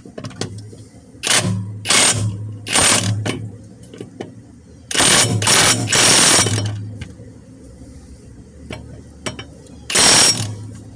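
Ryobi cordless impact wrench hammering as it tightens a mower blade bolt: three short bursts, then a longer burst of nearly two seconds about halfway through.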